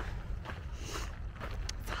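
Wind rumbling on the microphone while a hiker walks, with a few footsteps on the trail.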